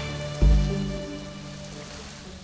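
Water sprinkling from a watering can's rose onto soil and celery leaves, a steady rain-like patter, with background music playing over it.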